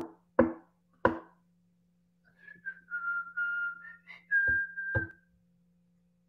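A person whistling a few held notes that step up and down in pitch, after three sharp taps or knocks in the first second and with two more knocks near the end, over a faint steady low hum.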